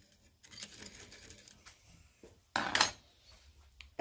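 A steel round chainsaw file being handled in a metal file guide, rubbing faintly against the guide and chain, then a short, louder metallic scrape about two and a half seconds in.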